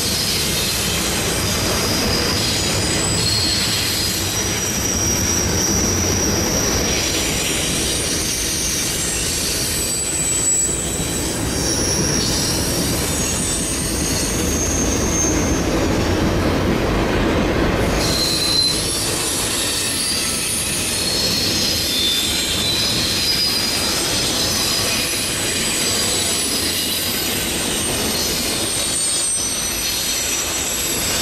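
Double-stack container cars of a long Canadian Pacific intermodal freight train rolling through a sharp curve, their steel wheels squealing against the rails in many high, wavering tones over a steady rumble and clatter. The low rumble lessens about two-thirds of the way through while the squealing carries on.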